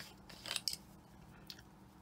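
A few short, faint squirts from a trigger spray bottle of 90% alcohol misting a sheet of translucent polymer clay, the bottle nearly empty.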